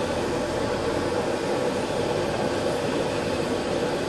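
Steady rumble and hiss of a moving bus heard from inside the cabin: engine and road noise at an even level.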